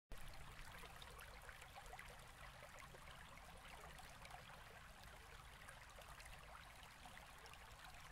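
Faint, steady trickle of running stream water.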